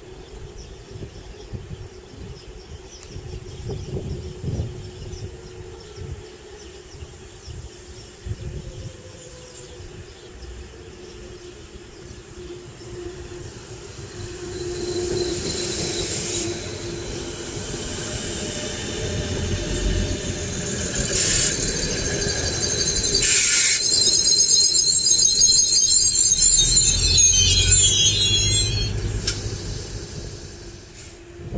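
DB class 605 ICE-TD diesel multiple unit approaching and rolling past, its rumble growing louder from about halfway. A high-pitched squeal sets in over the last few seconds as it slows, then fades just before the end.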